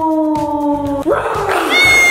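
Background music with a long, slowly falling held note over a steady beat. About a second in, a cat hisses and yowls as a gloved hand reaches at it.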